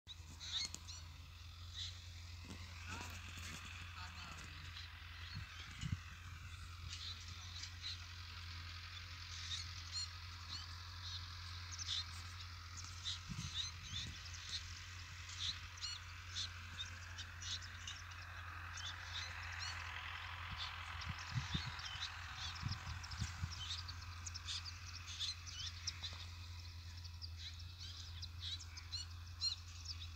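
Small birds chirping in many short, quick calls throughout, with a haze of more distant bird calls beneath and a steady low hum.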